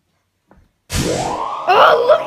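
A sudden rising swoop sound effect, sliding from a low rumble up to a high held tone in about half a second, about a second in. A voice starts over it near the end.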